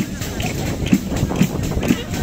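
Tammorra, the large southern-Italian frame drum with jingles, beating a steady tammurriata rhythm for the dance, with a strong stroke about twice a second. A voice, likely singing, is heard along with it.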